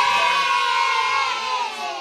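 Several voices shouting together in one long, drawn-out cheer that fades out near the end.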